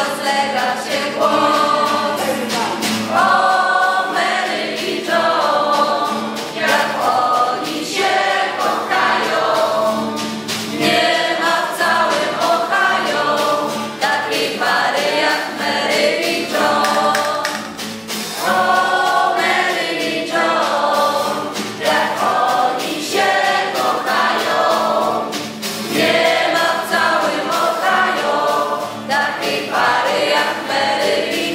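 Many voices singing a song together over music with a steady beat.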